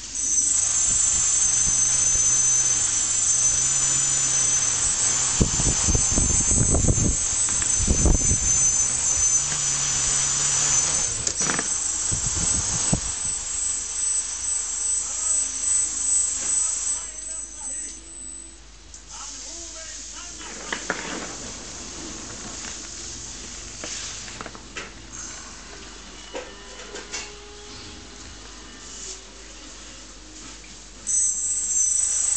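Homemade quadcopter's brushless motors and propellers running with a steady high whine and low rumbling gusts, starting suddenly at the outset. About 17 seconds in, the sound drops to a much quieter, uneven level with scattered small knocks.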